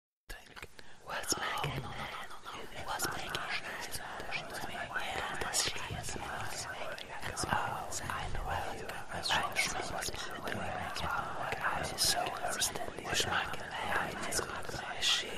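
Horror-style ghost whispering: a continuous stream of whispered voices with sharp hissing 's' sounds, starting a moment after the beginning.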